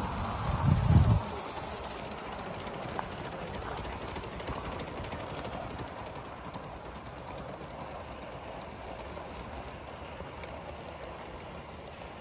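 Gauge 1 model train of a locomotive and coaches running along garden track: a steady running noise with faint, rapid ticking from the wheels on the rails. A low rumble, like wind on the microphone, fills the first second.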